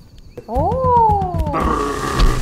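A human voice making monkey-like cries for an animated monkey. One call sweeps up and then slides slowly down, starting about half a second in. It is followed near the end by a rougher, steadier cry.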